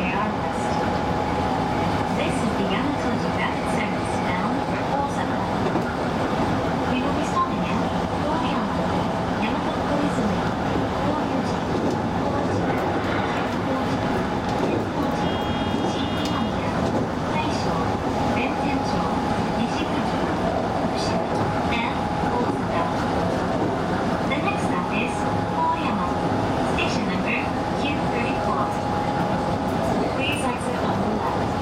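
Steady hum and whir inside the cab of an electric train standing still, its onboard equipment running, with scattered faint clicks. A brief high beep sounds about halfway through.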